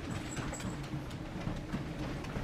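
Quiet footsteps of a person walking across a hard floor, an irregular patter of light knocks.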